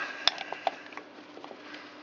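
Wire cutters working on a wire fat ball feeder: one sharp snip about a quarter second in, then several lighter clicks and small rattles of the cutters and wire mesh.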